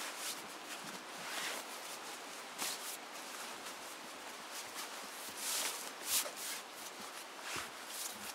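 Heavy waterproof fabric of a Czech army bedroll, with its wool blanket inside, rustling and rubbing as it is rolled up by hand on grass, in a run of irregular swishes.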